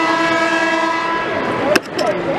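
A horn sounds one long, steady note that cuts off with a click near the end.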